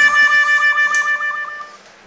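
Background music: a single held note with a wavering pitch that fades out near the end.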